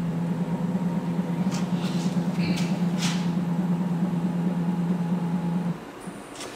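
A NEMA 34, 1600 oz-in stepper motor turning a 4th-axis chuck through a timing belt, humming steadily while the axis rotates slowly back to its zero position at 12 RPM. The hum cuts off suddenly near the end as the axis reaches zero. A few faint clicks are heard along the way.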